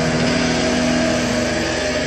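Heavily distorted electric guitar holding a sustained, droning chord with no drums, part of a heavy hardcore track.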